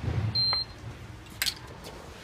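A short, high electronic beep, then a sharp click about a second later as a glass door is opened.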